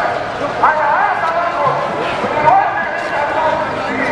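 Crowd hubbub: many people talking at once in the open air, their voices overlapping. A louder voice stands out about half a second in and again about two and a half seconds in.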